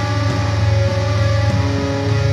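Black metal: heavily distorted electric guitars playing held chords in a dense, loud wall of sound, changing chord about one and a half seconds in.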